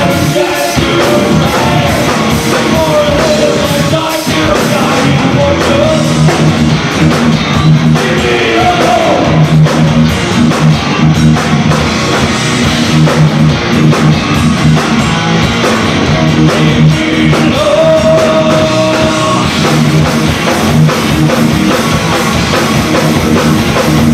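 Live rock band playing: distorted electric guitars, bass and drum kit, with held, sliding notes over a steady low bass line. Heard through an 8mm camcorder's microphone from the audience.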